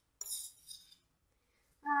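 A metal utensil scraping and clinking against a ceramic bowl as the marinade is scraped out of it: one bright, ringing scrape lasting about half a second, then a fainter one.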